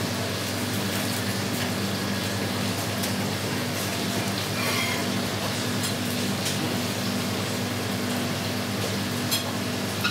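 Steady hum and hiss of kitchen ventilation running, with a few faint clicks from a knife being worked into a partridge's belly skin.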